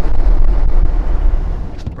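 Wind and road noise inside a moving pickup truck at speed: a heavy low rumble that eases off near the end.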